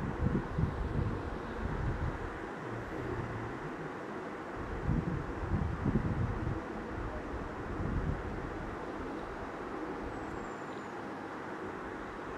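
Low, irregular rumbling under a steady background hiss, with no clear event.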